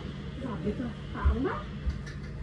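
A few short, high whines that rise and fall in pitch, in quick succession, with two dull thumps, one in the middle and one near the end.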